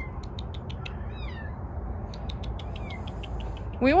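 A litter of tiny kittens mewing: short, thin, high cries that fall in pitch, heard a few times.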